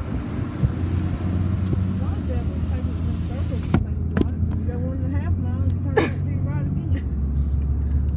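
Car engine and tyre noise heard from inside the cabin while driving: a steady low drone, with a few sharp knocks about four and six seconds in.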